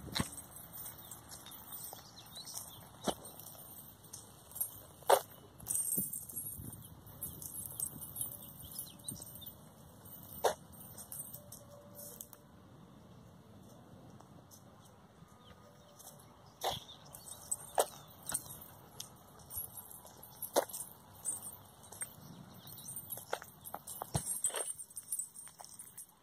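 Metal chain leashes and collar chains clinking now and then as two dogs walk on them, with scattered faint clicks; quiet overall.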